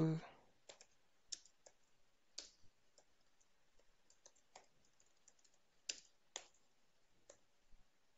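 Computer keyboard keys being pressed one at a time in slow, unhurried typing. There are about a dozen faint clicks, irregularly spaced with pauses between them.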